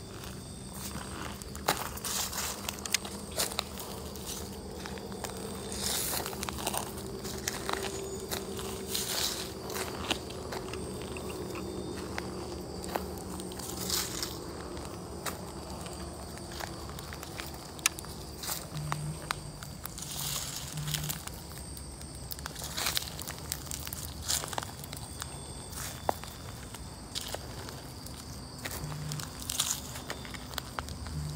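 Irregular footsteps crunching and crackling through dry leaf litter and twigs, over a steady high chirring of insects.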